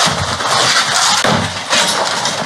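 Drywall and wallpaper being ripped off a wall and crashing down: loud, continuous cracking and crunching of breaking wallboard, with brief lulls after about a second.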